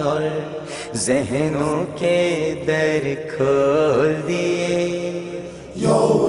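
A man singing a naat, an Urdu devotional hymn to the Prophet, drawing out long wavering held notes over a steady low drone.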